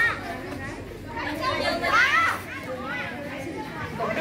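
A group of children talking and calling out together, high-pitched voices rising and falling, loudest about two seconds in.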